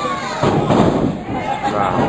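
A wrestler landing hard on the ring mat after a dive off the top rope: one loud thud with a short boom about half a second in. Crowd voices follow.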